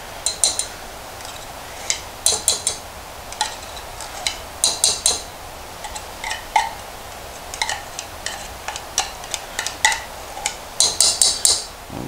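Metal spoon scraping and clinking against the inside of a tin can as thick condensed milk is scraped out, in irregular short runs of strokes, the longest near the end.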